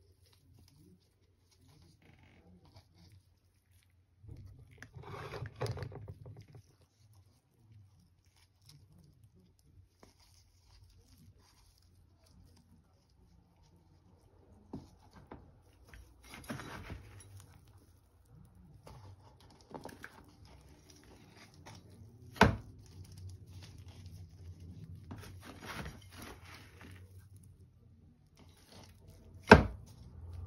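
Hand trowel scraping and scooping loose potting mix of soil, rice husk and perlite in a plastic tub, with the mix rustling and pouring into a pot. Two sharp knocks, one about two-thirds through and a louder one just before the end.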